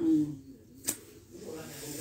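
A sung note from a woman's voice fades out. About a second in comes a single sharp click, then a soft airy hiss of breath as the then singer draws in air before her next phrase.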